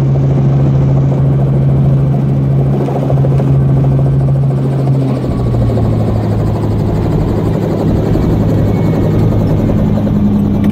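Helicopter engine and rotor running, heard from inside the cabin: a loud, steady hum that drops slightly in pitch a little past halfway.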